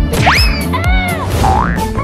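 Cartoon sound effects over upbeat background music with a steady beat: a fast upward pitch glide about a quarter second in, then arching rise-and-fall tones and a dipping, rising sweep.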